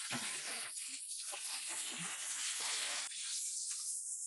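Heavy canvas awning fabric rustling and swishing as it is handled and pulled into place overhead, a continuous noisy rush with a brief dip about three seconds in.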